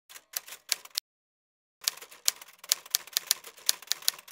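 Typewriter keystrokes used as a typing sound effect: a few keystrokes in the first second, a pause, then a quick irregular run of keystrokes, about five or six a second.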